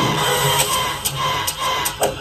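A rasping, scratchy sound effect with four sharp clicks about half a second apart.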